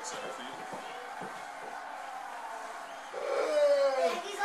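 Steady crowd noise from a televised baseball game. About three seconds in, a single drawn-out voice with a slightly falling pitch comes in, louder than the crowd.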